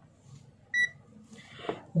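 Digital multimeter (ANENG Q1) giving one short, high beep a little under a second in.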